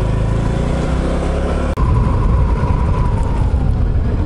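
Honda automatic scooter's single-cylinder engine running while it is ridden, with steady engine tones at first. About two seconds in the sound cuts out for an instant, and after that the engine comes back rougher and louder, mixed with wind noise on the microphone.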